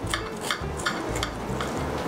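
A knife cutting through a hamburger on a plate: irregular small crackles and clicks as the blade works through the bun and touches the plate.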